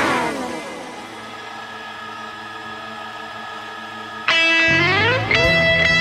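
Multitracked electric guitars: a loud chord glides down in pitch at the start and fades into a quieter ringing hold. About four seconds in a loud rising pitch glide cuts in and leads into strummed chords that carry on.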